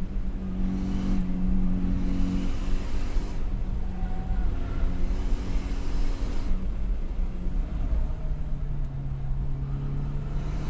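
Car engine heard from inside the cabin while driving on a race track, its note rising and falling several times as the throttle and gears change, over a steady low road rumble.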